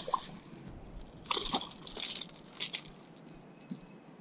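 A hooked chain pickerel thrashing and splashing at the water's surface beside the boat, in irregular bursts that are strongest from about a second in to near three seconds.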